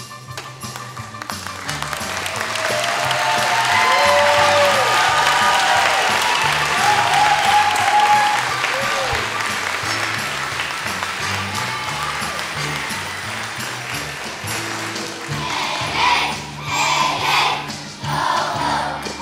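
Audience applause and cheering, with whoops, swelling a couple of seconds in and fading slowly, over a backing track that keeps playing. Near the end children's voices come back in, singing.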